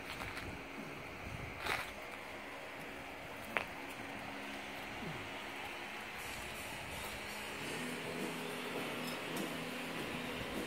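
Low steady background hum with faint steady tones, a brief scuffing noise about two seconds in and a single sharp click a few seconds later.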